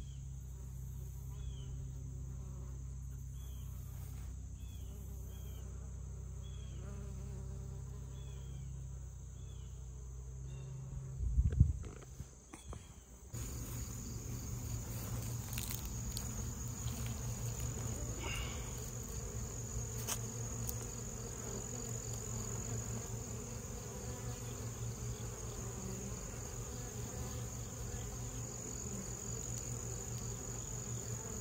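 Honey bees buzzing, first foraging on Russian sage flowers, then many bees buzzing at a hive entrance, a busier fluttering hum, from about 13 seconds in. A steady high cricket trill runs under the hive part, and a brief loud low rumble comes about eleven seconds in.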